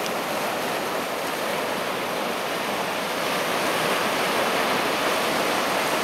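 Steady wash of small surf breaking on a sandy beach, swelling slightly in the second half.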